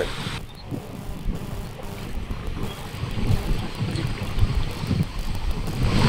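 Wind buffeting an outdoor microphone: a low, uneven rumble with no clear source on top of it.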